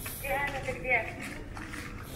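A few quiet spoken words, a voice speaking briefly, over steady background noise.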